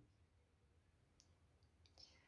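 Near silence, with a few very faint short clicks in the second half.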